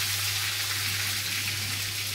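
Drumstick pieces cooking in liquid in a kadai on a gas stove: a steady sizzling hiss with a low hum underneath.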